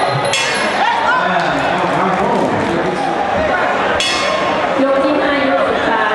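Voices of the crowd and ringside people chattering and calling all around, with light metallic clinks.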